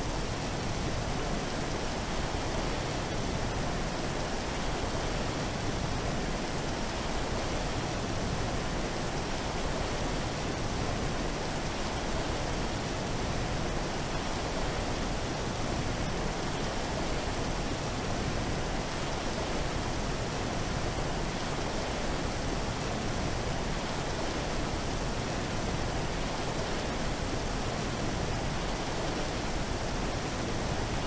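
Steady rushing, water-like noise from an electronic sound sculpture's soundscape, even and unchanging throughout.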